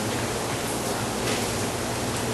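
Steady hiss with a low hum underneath: the background noise of a lecture-room recording during a pause in speech.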